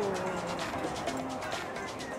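The end of a woman's long, falling "ooh" in the first half second, then busy street background with faint music.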